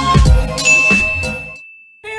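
A single bright ding, the notification-bell sound effect of a subscribe-button animation, rings out about half a second in and hangs on as it fades. Under it, beat-driven intro music with drum hits fades away to silence.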